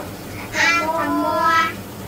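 A high-pitched voice chanting one drawn-out syllable for about a second, a Khmer consonant name being recited.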